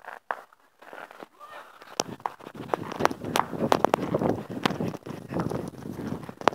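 Fireworks going off: a quick, irregular run of sharp cracks and pops starting about two seconds in, with voices in the background.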